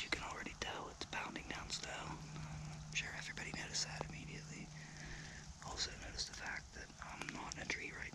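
A man whispering close to the microphone, over a low steady hum.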